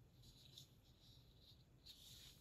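Near silence, with faint soft scratching and rustling of hands handling a miniature.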